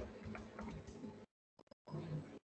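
Faint ticking clicks over low background noise, heard through a video call's audio; the sound cuts out abruptly about a second in and comes back near the end.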